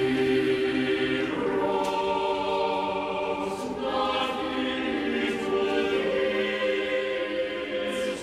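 A choir singing slow, sustained chords in a solemn funeral setting of sung words, the chords moving every second or two with soft consonants between them.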